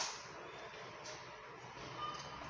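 One sharp plastic click right at the start as the Jawa motorcycle's handlebar engine kill switch is flipped, then only faint steady background hiss.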